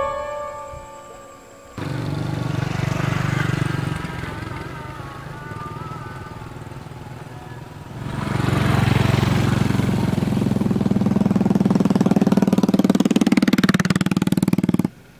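Horror-film score: a sudden sting with ringing tones, then a low rumbling drone with wavering higher tones. About eight seconds in it swells again, louder and with a fast pulsing, and builds to an abrupt stop.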